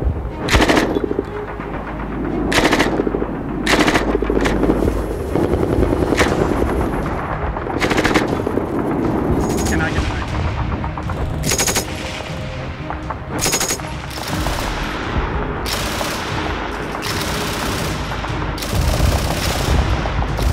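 About ten short bursts of automatic fire from German MG 34 and MG 42 belt-fed machine guns in 7.92×57mm Mauser. Each burst lasts from a fraction of a second to about a second, with gaps between them.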